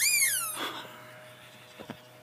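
Rubber squeaky dog toy being stepped on, giving one high squeak that rises and falls at the start. A brief rustle follows, and two faint clicks come near the end.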